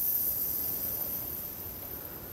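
Faint steady hiss that slowly fades: compressed air passing through the compressor's outlet regulator into the pressure-switch fitting as the regulator knob is wound up.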